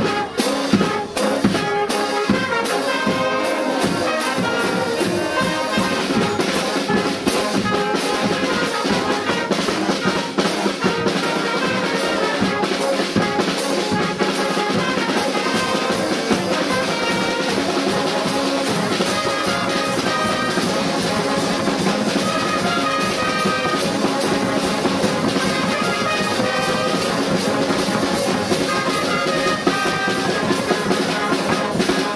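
Brass band playing live, with trumpets and low brass over a bass drum and snare drums keeping a steady march beat.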